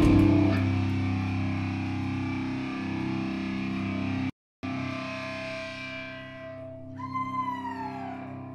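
Distorted electric guitars in a live heavy rock band: the loud full-band playing stops about half a second in and a chord is left ringing through the effects. The sound drops out completely for a moment midway, and near the end a high guitar note bends downward.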